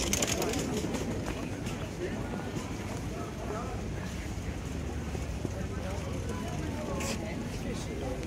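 Outdoor market ambience: indistinct voices of shoppers and passers-by talking, with a brief sharp noise about seven seconds in.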